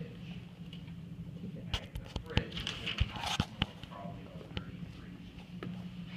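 A handful of sharp clicks and knocks, roughly two to four and a half seconds in, over a steady low room hum.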